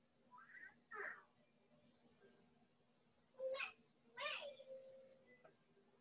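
A few faint, short pitched vocal sounds: two brief arching calls about half a second and a second in, then two stronger ones in the middle, the last falling and trailing off into a held low note.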